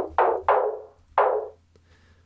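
Snare drum sample (a Black Beauty snare recorded in a large room) played at different pitches from Ableton Live's Sampler through its filter. It sounds as three sharp hits with short decaying tails in the first second and a half, then fades away.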